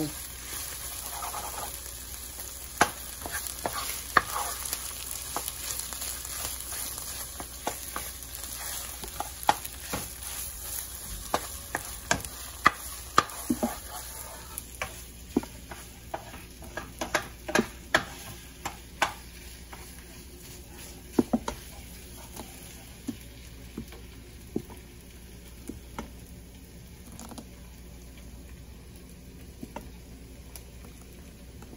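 Red onions and tomato paste frying in oil with a steady sizzle while a wooden spoon stirs, with frequent sharp knocks and scrapes against the pan. The knocks come thickest through the middle, and the sizzle grows softer in the second half.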